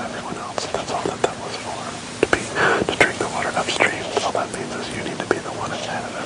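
Men speaking in whispers and low voices, too quiet to make out words, with a sharp click about three seconds in.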